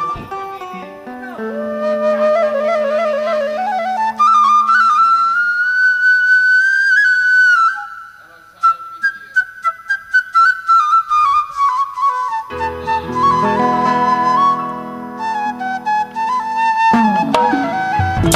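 Betawi gambang kromong music led by a bamboo flute (suling) playing a slow, wavering, ornamented melody. A run of sharp percussion strokes comes about halfway through, and lower instruments join soon after.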